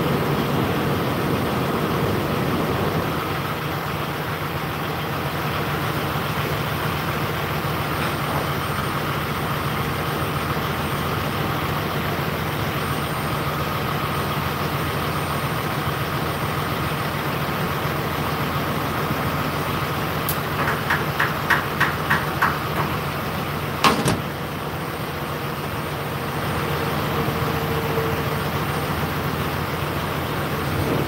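A semi truck being fuelled at a diesel pump: a steady hum of fuel running through the nozzle over the truck's idling engine. Near the end comes a quick run of about eight clicks from the nozzle, then a single sharp clank as it is pulled from the tank.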